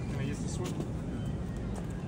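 Faint voices over a steady low rumble, with a brief sharp click about two-thirds of a second in.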